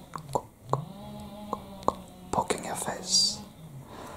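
A few soft, sharp clicks spread through the first half, and a short whispered hiss about three seconds in, over a low steady hum.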